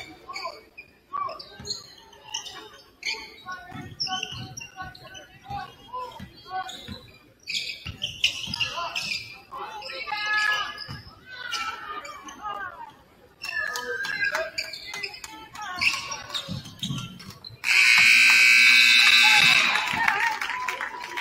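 Basketball bouncing and sneakers squeaking on a hardwood gym floor, with players and spectators calling out. Near the end, the scoreboard horn sounds loud and steady for about two and a half seconds as the game clock hits zero, signalling the end of the game.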